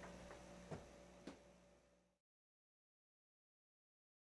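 Near silence: faint room tone with a steady low hum and three small clicks, then dead silence from about two seconds in.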